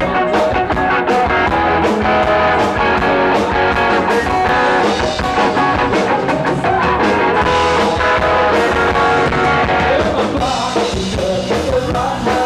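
Live rock band playing loudly: electric guitar and drum kit keeping a steady beat, with a man singing.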